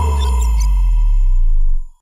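Logo intro sting: a deep bass boom that rings on with a thin, steady high tone above it, then fades out just before the end.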